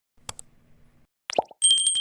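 Animated subscribe-button sound effects: a mouse click, then a short falling pop, then a bright bell ringing with a rapid flutter that is the loudest part.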